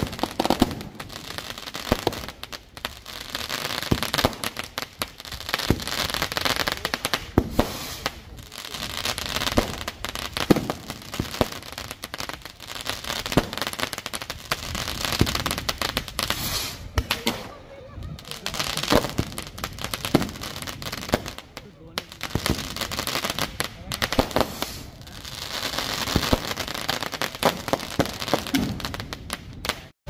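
Aerial fireworks going off one after another: sharp bangs and dense crackling that swells and fades every few seconds.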